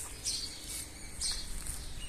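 Outdoor ambience: wind in the trees and on the microphone, with a few short, faint bird chirps about half a second apart.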